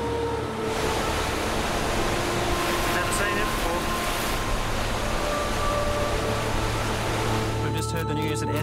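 Rushing floodwater, a steady noisy rush that comes in about a second in and cuts off just before the end, laid over a slow music score of long held notes.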